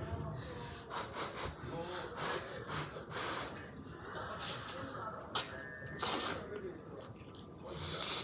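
A person slurping cheese ramen noodles off chopsticks, several noisy slurps with the loudest about six seconds in and another at the end. Voices from a TV show talk underneath.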